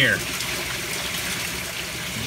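Steady rush of running water in a home aquaponics system.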